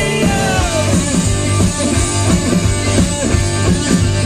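Live punk rock band playing loud: electric guitar and drum kit, recorded from the crowd on a small handheld camera's microphone.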